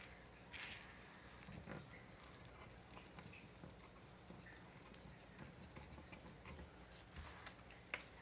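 Scissors snipping through a thin plastic zip-top sandwich bag, the bag crinkling as it is handled; faint.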